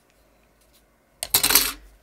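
A brief, loud clatter of a small hard object knocking down on a tabletop, a little past halfway through, after a quiet room.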